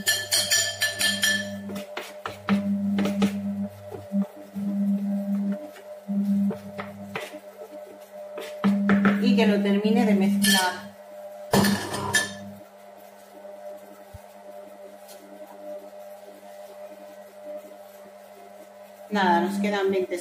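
Monsieur Cuisine Connect kitchen machine's motor humming in short on-and-off spells as it mixes cake batter. A spoon clinks against the machine a few times as flour is added through the lid opening.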